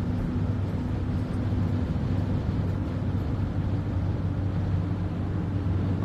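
Steady engine and road drone inside a moving car's cabin.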